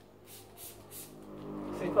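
Pump spray bottle of dry shampoo for dogs spritzing onto a dog's coat: four short hisses in the first second, then quieter.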